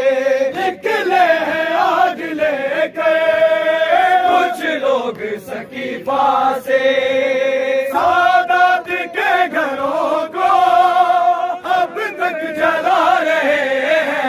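A noha, a Shia lament, sung by a male lead reciter with a crowd of men chanting along in long, held, wavering notes. A few sharp slaps of hands beating on chests (matam) break through.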